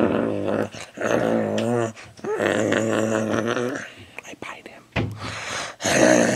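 Wordless low moaning vocal sounds with a wavering pitch: two long moans, then a shorter one near the end.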